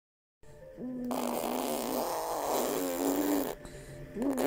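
A baby blowing a buzzing lip trill, a "vroom vroom" engine imitation. It begins with a short buzz, is held steadily for about two and a half seconds and stops shortly before the end.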